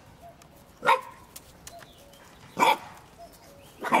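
Pembroke Welsh Corgi puppy barking: three short, high puppy barks spaced a second or two apart.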